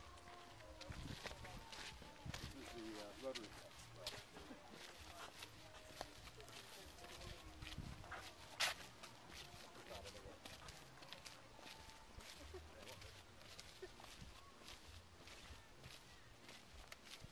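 Faint, irregular footsteps on a dirt footpath, with faint voices in the background and one sharper click a little past halfway.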